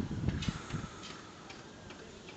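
Faint, irregular metallic ticks and taps, about five in two seconds, from work on the steel plates of a tank shell under construction.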